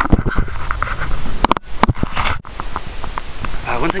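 Irregular knocks and clunks of handling around the snowblower and camera, with a low rumbling underneath.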